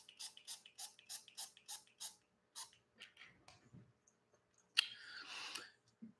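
Light clicking from a small propolis bottle being handled, about three or four clicks a second at first and then slowing and stopping, followed near the end by a sharp click and a short hiss from the bottle's pump spray.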